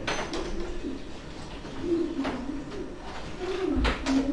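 A bird cooing: a low call that wavers up and down in pitch, with a few faint clicks.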